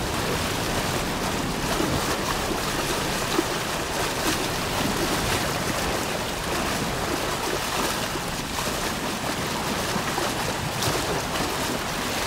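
Steady rush of moving water, an even wash of sound.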